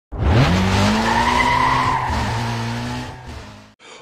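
Intro sound effect of a car: an engine revs up over the first half second and holds, with a high squealing whine of tyres, then fades out near the end.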